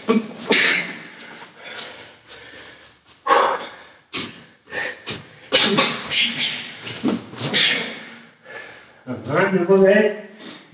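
A man's sharp, forceful exhalations, one short burst with each punch, coming in quick runs of two or three with pauses between, as he throws karate punch combinations. Near the end his voice sounds briefly.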